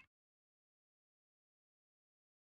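Complete silence: the audio track has cut out.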